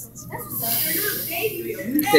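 Indistinct voices talking quietly, with a steady hiss over the second half.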